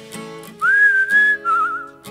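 Someone whistling a melody over strummed acoustic guitars: starting about half a second in, a note slides up and holds, then a slightly lower note wavers in a quick trill near the end.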